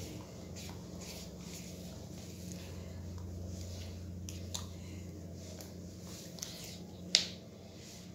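A spatula stirring thick cake batter in a plastic bowl: faint wet scrapes and soft clicks, with one sharper click about seven seconds in, over a steady low hum.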